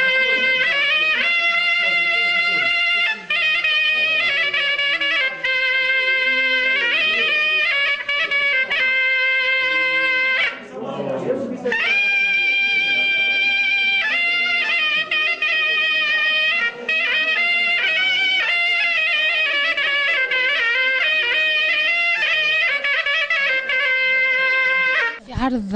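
Tunisian zokra, a double-reed shawm, played solo. It holds loud, reedy notes and steps between pitches in a folk melody, with a short break for breath just before the middle.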